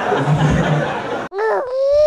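Comedy club audience laughing, cut off abruptly about a second and a half in. A short, wavering, pitched cry follows: the logo sting's sound effect.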